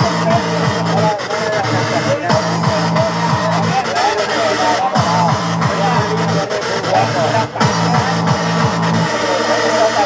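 Fast electronic dance music played loud from a DJ set, with a pounding kick drum at about three beats a second that drops out briefly about five seconds in and again near the end. Voices shout over it, and someone laughs near the end.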